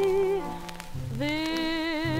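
A 1940s dance-band recording played from a 78 rpm shellac disc, with surface crackle and clicks throughout. A held note ends less than half a second in, and after a brief softer gap the band enters on a new sustained chord about a second in.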